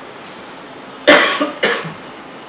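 A person coughing twice in quick succession about a second in, the first cough the louder.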